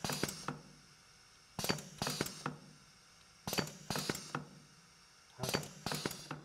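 Two pneumatic cylinders on a lab trainer panel cycling through an A+ B+ B− A− sequence: a burst of sharp clicks and knocks with a short hiss of air about every two seconds, as the pistons stroke, hit their ends and trip roller limit switches and valves.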